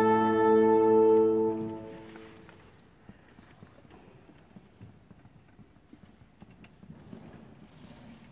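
Wind instruments of a concert band holding a sustained chord, which cuts off about a second and a half in and rings away in the hall's reverberation. After it comes a quiet hall with a few faint knocks and rustles.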